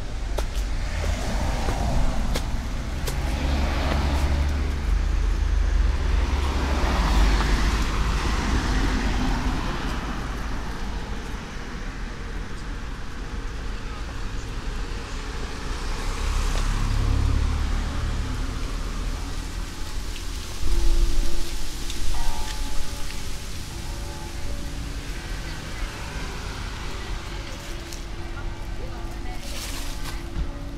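Riverside street traffic: cars passing one after another, each a low rumble that swells and fades, over a steady background of city noise and faint voices. A couple of brief louder sounds come about two-thirds of the way in.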